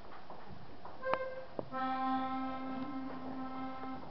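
Accordion sounds a short note about a second in, then holds a steady chord for about two seconds.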